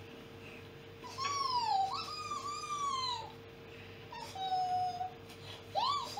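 High-pitched whining: four drawn-out calls, the first two sliding down in pitch and the later ones held level, over a faint steady hum.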